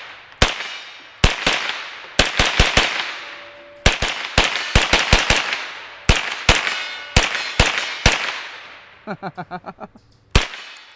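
Sterling Mk.6 semi-automatic 9mm carbine fired as fast as the trigger can be pulled, about twenty shots in quick uneven strings, each trailing off in a long echo. The firing stops about eight seconds in, with a man laughing near the end.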